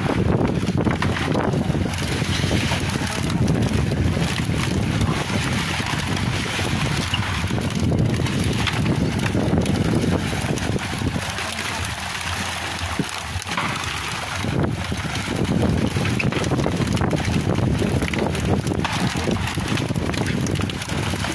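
Wind buffeting the microphone: a continuous rumble, strongest in the low end, that eases for a moment about twelve seconds in.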